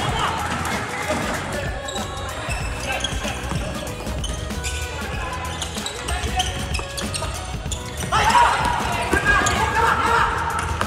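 Futsal ball being kicked and thudding on a wooden indoor court during play, with players' shouts, loudest near the end.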